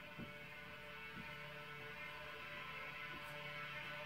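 Faint steady hum, with a couple of soft knocks in the first second or so.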